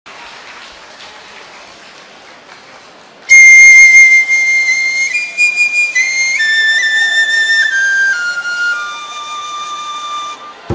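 Shinobue (Japanese bamboo transverse flute) playing a solo melody. It enters about three seconds in with a loud, high held note, then steps down in pitch note by note in long held tones. Before it enters there is only faint room noise.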